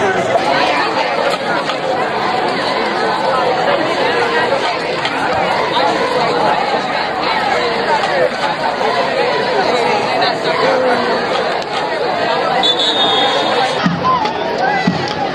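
Crowd of spectators talking over one another: a steady, dense babble of many voices.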